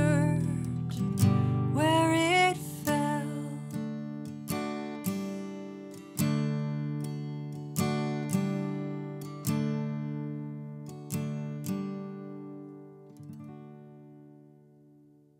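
Taylor acoustic guitar closing out a song with slow chord strums, about one a second, each ringing and decaying. The last chord fades out over the final seconds. A wordless sung note glides and trails off in the first couple of seconds.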